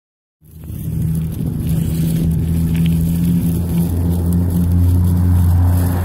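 A motor running at a steady low pitch, starting about half a second in and holding steady throughout.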